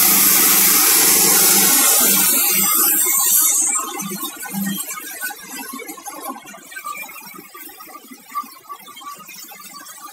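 Plastic pellets from an underwater pelletizing line pouring out of the outlet pipe into a steel trough with a steady loud hiss, which drops away after about four seconds. After that comes a fainter, grainy rattling of pellets in the trough over a low machine hum.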